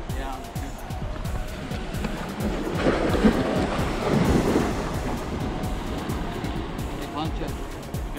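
Waves washing against jetty rocks, swelling about three to four seconds in, with wind buffeting the microphone and background music underneath.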